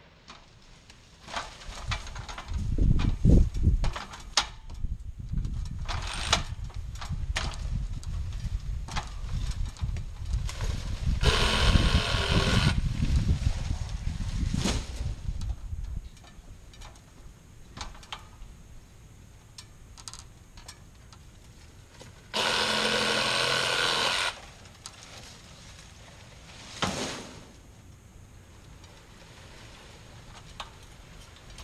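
A handheld power tool cutting palm fronds in two short bursts of about one and a half to two seconds each, around eleven and twenty-three seconds in, the second running steady and loudest. Between the bursts are scattered knocks and rustles of fronds, over a low rumble that drops away about halfway through.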